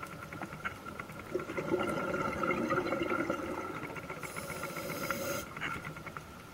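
Scuba regulator breathing heard underwater: exhaled bubbles burbling and hissing, louder from about a second and a half in until shortly before the end, over a steady crackle of small ticks.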